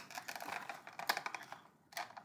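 Cardboard toy box and plastic figure being handled as the figure is worked out of its packaging: a string of small, light clicks and crackles.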